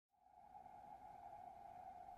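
Near silence, with a faint steady tone held throughout.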